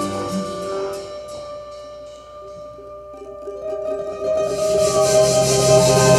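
Live cumbia band with trumpet, trombone, saxophone, guitars, double bass and percussion. About a second in, the band thins out to a quiet passage of a few held notes, then comes back in full near the end.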